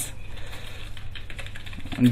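Typing on a computer keyboard: a quick, uneven run of keystroke clicks over a steady low hum.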